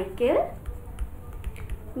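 A few light ticks of a plastic stylus tapping and sliding on a graphics tablet as a word is handwritten, after a brief spoken syllable.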